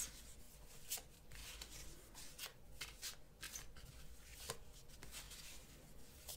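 Deck of oracle cards being shuffled and handled by hand: faint, irregular flicks and taps.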